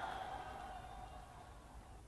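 The closing held note of a short sponsor jingle, fading away over about a second and a half to near silence.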